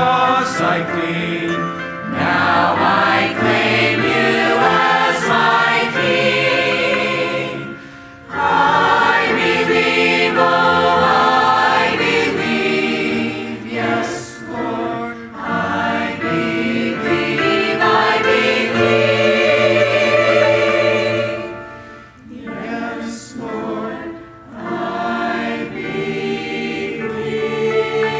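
Church choir of men's and women's voices singing together in long held phrases, with short breaks between phrases about eight and twenty-two seconds in.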